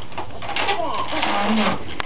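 A young child's sing-song vocalizing, with pitch sliding downward in the middle and a short held note near the end.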